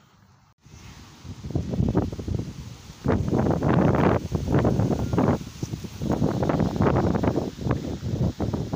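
Wind buffeting a phone's microphone in loud, irregular gusts, starting abruptly about half a second in.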